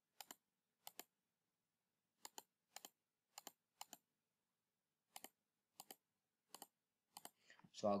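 Computer mouse button clicking about ten times at uneven intervals, each click a quick pair of snaps from press and release, over near silence: anchor points being placed one by one with a pen tool. A man's voice starts at the very end.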